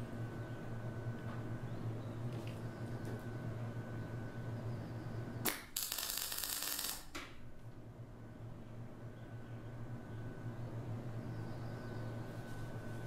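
A single MIG tack weld: the arc strikes with a sharp crack about halfway through and crackles for about a second and a half before cutting off, tacking a new bearing mount onto a steel hydraulic ram. A steady low hum runs underneath.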